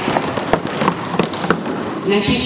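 Scattered hand clapping from an audience: a quick, irregular patter of sharp claps that stops as speech resumes.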